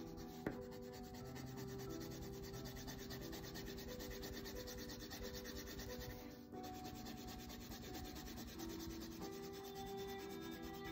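A brown colored pencil shading on paper: a steady, scratchy rubbing of the pencil lead across the sheet in quick strokes, with a brief pause past the middle. There is a single light tap about half a second in.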